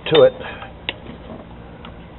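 A single sharp click about a second in, with a fainter one near the end, from hand work on the engine-bay hoses and their spring squeeze clamps.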